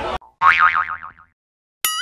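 Two cartoon 'boing' sound effects: a springy tone with a quavering, wobbling pitch about half a second in that dies away within a second, then a second one starting with a click just before the end.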